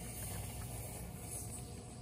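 Paper envelope being opened by hand: faint rustling of paper that swells briefly twice over a low steady room hum.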